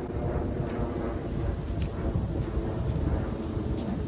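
Wind buffeting the microphone of a handheld phone, a low rumble that rises and falls, with a few faint clicks.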